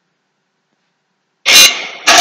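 Dead silence, then about one and a half seconds in a loud, bright, horn-like blast starts abruptly. It is the opening of a played video's soundtrack.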